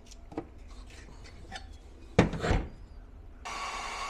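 A plastic plug-in power meter rubbing and scraping against an inverter's AC outlet as it is worked into the socket, with two loud knocks about two seconds in as it seats. Near the end a steady whirring with a hum starts up as an appliance comes on through the meter.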